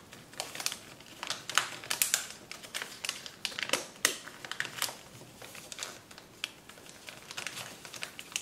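A sheet of kraft paper crinkling and crackling as fingers fold and press creases into it, in irregular sharp rustles that are loudest about two seconds in and again at four seconds.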